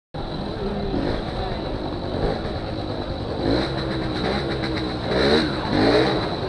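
Small 50 cc two-stroke moped engine (1992 Aprilia Classic 50 Custom) running at low speed, with a few short rising revs in the second half, over voices of people close by. A thin steady high whine sits above it.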